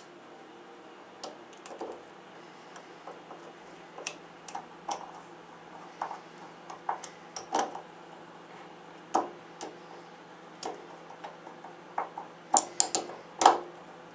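Small steel bolts being fitted and screwed into a compression driver's metal housing: irregular light metallic clicks and taps of bolts and screwdriver tip on the metal parts, with a quicker cluster of louder clicks near the end.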